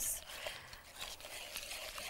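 Thin flour-and-starch batter being stirred in a ceramic bowl: faint, irregular swishing and scraping with small ticks.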